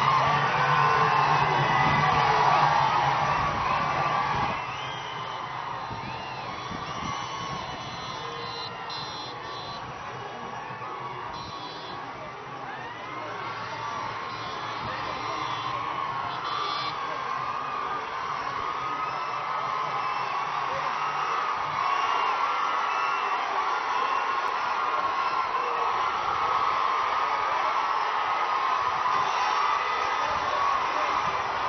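A large crowd cheering, shouting and whooping in a continuous din. It is loud for the first few seconds, drops back, then swells again in the last third.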